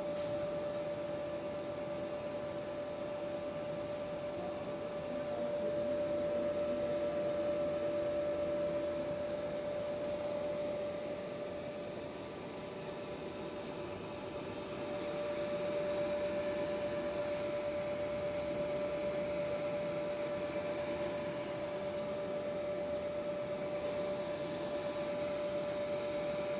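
Steady mechanical hum with one constant mid-pitched tone in it, like a fan or other running machine. It swells a little louder about five seconds in, eases off around twelve seconds, and swells again a few seconds later.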